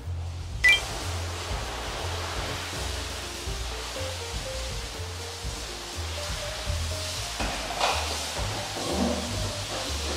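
Water spraying steadily from a rinse nozzle onto a car's body as the shampoo is washed off. It starts suddenly about half a second in, with a click, over background music with a steady bass line.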